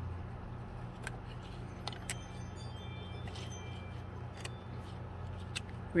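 Steady low electrical hum with a few faint clicks and taps as small thin wooden kit pieces are handled and fitted together.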